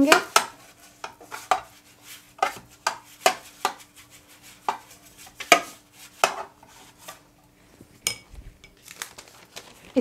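Metal cake pan knocking and scraping on the table while butter is rubbed around its inside: a string of irregular sharp taps.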